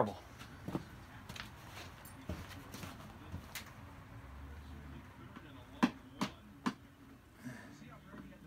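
Hands handling a car's windshield washer nozzle on the hood: a few faint clicks and taps, then three sharper clicks about six seconds in. The nozzle sprays poorly and is being checked.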